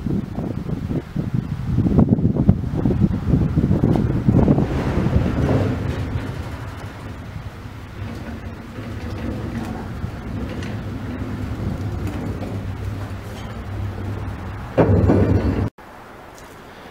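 Low rumble of a rail car carrying a steel locomotive saddle tank being moved along the track. It is loudest for the first few seconds, then settles to a steadier low hum.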